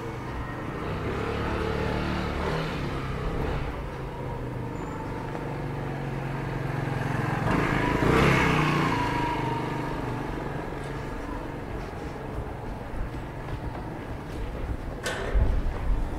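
A motor scooter engine running, growing louder to a peak about halfway through as it passes close, then fading away. A few sharp clicks follow near the end.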